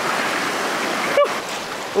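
River rapids rushing over rocks: a steady, even noise of fast whitewater.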